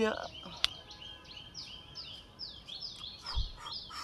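A bird calling over and over, a short falling chirp repeated about two to three times a second, over faint outdoor background noise. A single sharp click comes just over half a second in.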